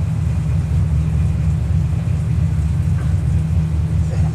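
A loud, steady low rumble with nothing clear above it.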